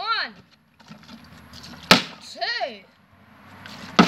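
A large plastic milk bottle with liquid in it lands with a sharp thud on a concrete floor after being flipped, about halfway through and again right at the end.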